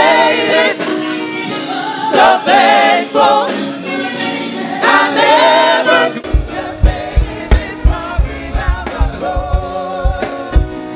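Live gospel singing: lead singers on microphones with a choir. About six seconds in, a steady low drum beat comes in under the voices.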